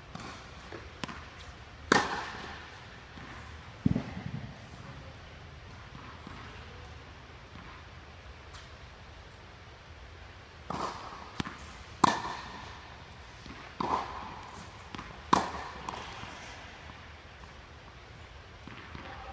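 Tennis balls being hit with a racket and bouncing on a hard indoor court: sharp pops, each trailed by a short echo off the hall. There are two hits a couple of seconds apart early on, then a run of four between about eleven and fifteen seconds in.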